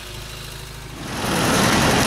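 A car engine idling with a steady low hum. About a second in, a louder rush of engine noise builds up and holds.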